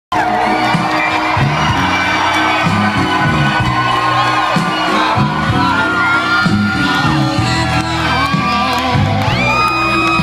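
A live blues-rock band playing at full volume, electric guitar and bass keeping a repeating rhythm, with the crowd cheering, whooping and whistling over it.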